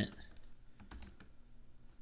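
Computer keyboard keystrokes: a handful of separate, quiet key clicks while code is typed.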